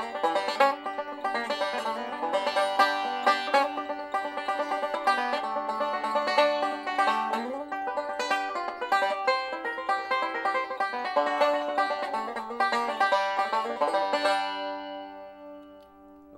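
Five-string banjo picked in steady rolls over a song's chord changes, without the melody being played. The picking stops about two seconds before the end and the last notes ring out and fade.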